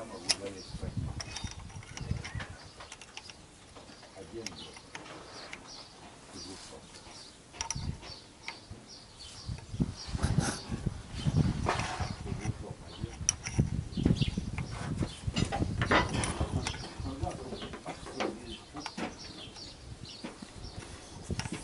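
Irregular metallic clinks and knocks of a hand wrench working a bolt on the underside of a truck, busier and louder in the second half.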